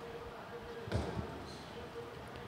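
A bocce ball being bowled down the court: one soft knock about a second in as it strikes the side wall, then faint rolling.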